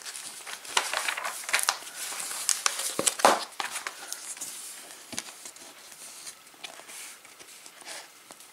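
Glossy paper pages of a trading-card game guide being turned and flattened by hand: rustling and crinkling, busiest in the first half with a sharp swish about three seconds in, then settling to a light rustle.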